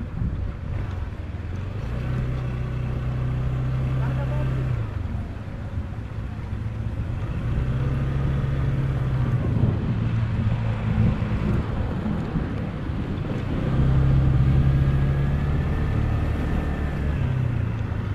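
Shineray Urban 150 scooter's single-cylinder engine running at low speed on a cobblestone road. The engine note swells and eases three times as the throttle is opened and closed, loudest near the end.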